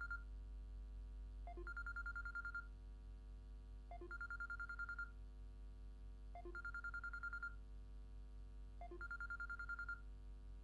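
Faint electronic telephone-style ring, a rapid trilling tone lasting about a second and repeating four times, roughly every two and a half seconds, over a low steady hum.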